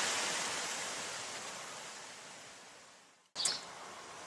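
Steady outdoor background hiss, like wind through garden foliage, fading out gradually over about three seconds. It cuts off to silence for an instant, then a brief short sound and quieter background noise follow as a new shot begins.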